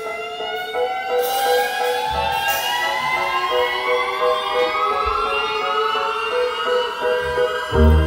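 Live band music: a slow, rising glide in pitch over a softly pulsing repeated note. Low bass and drums come in near the end.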